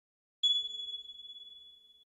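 A single high-pitched electronic ping, the chime of a channel logo sting. It sounds about half a second in and rings on one steady pitch, fading away over about a second and a half.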